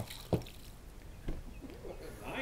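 Water briefly poured from a plastic pitcher into a small cup, faint, with a light knock about a third of a second in.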